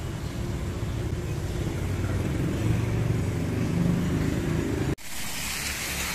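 Low, steady rumble of road traffic for about five seconds, then an abrupt cut to a steady hiss of a wet street.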